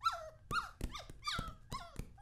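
A cartoon dog's voice: a run of about five short cries, each sliding down in pitch, a little under half a second apart.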